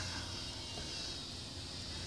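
Quiet outdoor background: a faint, steady hiss with no distinct sounds.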